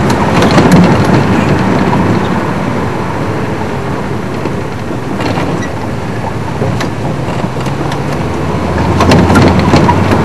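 Game-drive vehicle running: a steady engine drone with road noise and a few short knocks, louder near the start and again near the end.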